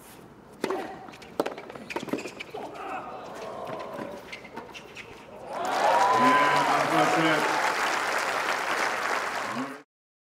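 A tennis rally on a hard court: a handful of sharp racket-on-ball strikes over the first few seconds, then the crowd breaks into loud cheering and applause with voices shouting as the point is won, cut off abruptly near the end.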